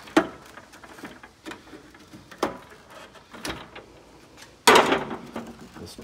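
Plastic car trim being handled and worked loose: a few sharp clicks and knocks, then a louder scraping rustle about five seconds in.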